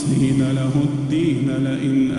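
A man's voice reciting the Quran in melodic tajweed as imam of the Taraweeh prayer. He draws out a long held note with small ornamental turns in pitch.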